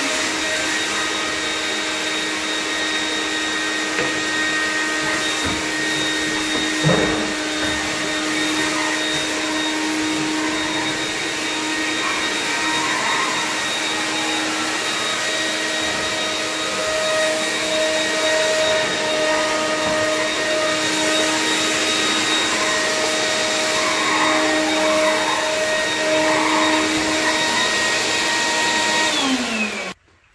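Stainless-steel wet/dry shop vacuum running steadily, sucking up cleaning slurry from a hardwood floor. There is a single knock about seven seconds in. Its motor pitch sinks as it is switched off at the very end.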